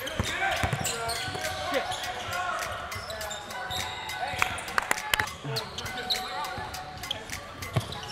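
Basketball dribbled and bouncing on a hardwood court during a pickup-style game, many short knocks, with indistinct players' voices in a large gym.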